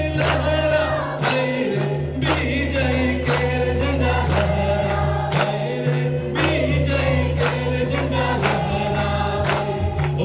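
Congregation singing a worship song together, led by a man on a microphone, over a hand drum beating about once a second.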